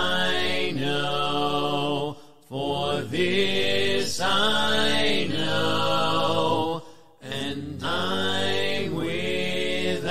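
A cappella hymn singing: low voices holding long, drawn-out notes without instruments, breaking off briefly about two seconds in and again about seven seconds in.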